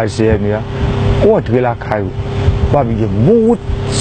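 Speech in pauses and bursts over a steady low hum.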